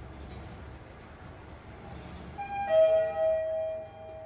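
Elevator arrival chime: a two-note ding, a higher note followed by a louder lower one, sounding about two and a half seconds in and then fading out. Under it is the low steady rumble of the lift car travelling.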